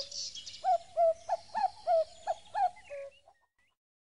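A bird calling a run of about eight short, even notes, about three a second, that stops a little past three seconds in.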